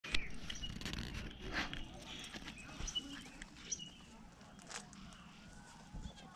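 A dog sniffing and moving about on gravelly, pine-needle-strewn ground, with rustling and scattered clicks close to the microphone, a sharp click at the very start, and a few short high chirps in the first few seconds.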